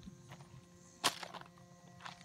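A single sharp knock about a second in, over a faint steady outdoor background.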